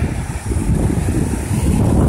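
Strong wind buffeting the microphone in a steady low rumble, with waves breaking against the rocky shore beneath it.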